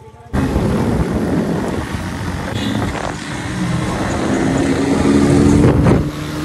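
Loud road-vehicle noise, wind rushing on the microphone over a running engine, starting abruptly about a third of a second in; a steadier engine tone comes through near the end.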